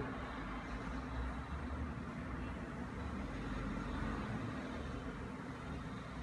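Steady low hum of background room noise with no distinct events.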